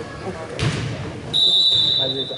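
A referee's whistle blown once, a long steady shrill note starting about a second and a half in, after a single thump a moment earlier, over spectator chatter in a gym.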